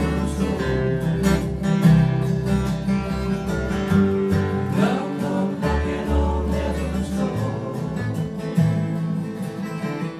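Acoustic bluegrass band playing: two acoustic guitars picked and strummed over upright bass notes.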